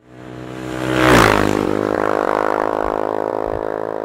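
Logo-animation sound effect: a whoosh swells to a peak about a second in, then gives way to a steady droning tone that slowly fades.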